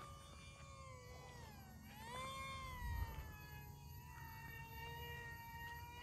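Faint high-pitched whine of the XK A100 J-11 RC jet's twin brushed electric motors and propellers in flight. The pitch sags about a second and a half in, rises again around two seconds, then holds steady.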